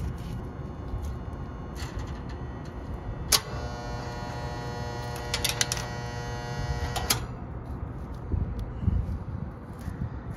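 A steady low electrical hum, joined by a higher, even buzz that switches on abruptly about three seconds in and cuts off about seven seconds in.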